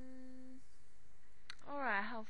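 A woman's short, flat 'mmm' hum, then a single mouse click about a second and a half in, followed by the start of a spoken syllable near the end.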